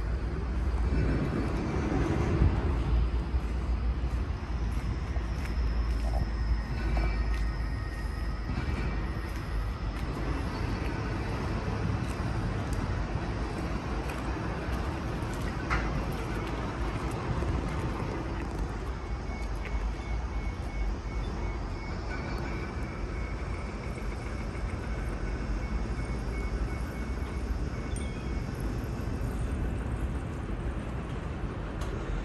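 Steady low rumble of city traffic and rail noise, with faint music-like tones over it. A high, evenly repeating tone sounds in the second half.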